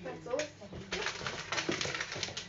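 A short hummed voice sound at the start, then crinkly rustling and handling noises from about a second in, dense and irregular.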